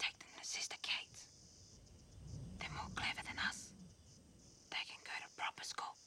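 Whispering voices in short hushed bursts, with a faint low murmur in the middle and a steady high drone of insects behind.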